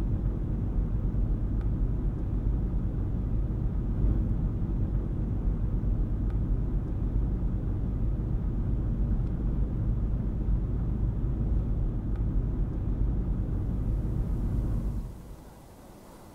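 A car driving along a road, a steady low rumble of engine and tyres heard from the moving car; it drops away near the end.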